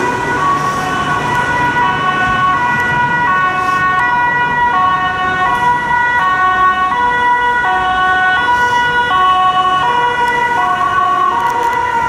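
German two-tone Martinshorn siren of a Renault Master patient-transport ambulance on an emergency run, switching between a high and a low tone in an even rhythm, each tone held for under a second, over the noise of road traffic.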